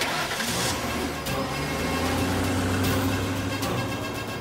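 A motor vehicle engine running with a steady low hum, mixed with background music.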